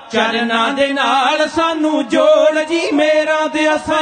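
Men of a Sikh dhadi group singing a Punjabi devotional song together, with a sarangi playing along.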